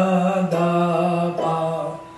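Three long held notes on an electronic keyboard, each a step lower than the last: a slow descending chromatic line.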